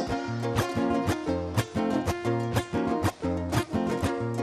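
Live band playing an instrumental passage: guitars strummed in a quick, even rhythm over a steady bass line.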